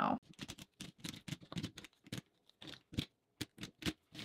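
Irregular light clicks and taps of plastic lip-product tubes and a plastic crate being handled and set down.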